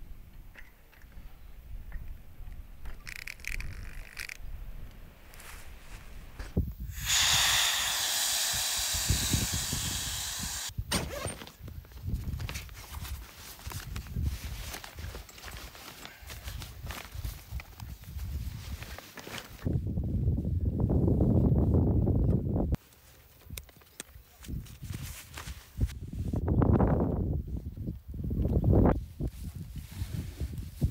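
Gear being handled and packed: rustling of fabric bags and knocks and clicks from a bicycle, with a loud steady hiss for about four seconds and two later stretches of low rumbling noise.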